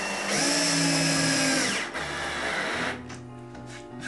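Cordless drill driving a screw into pine boards, the motor running for about a second and a half and then stopping. Background music continues underneath.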